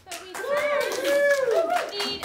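Audience applauding, with a high voice cheering twice over the clapping about half a second in.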